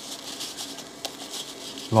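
Faint rustling of a small square of paper kitchen towel being rolled up between the fingers, with one small tick about a second in.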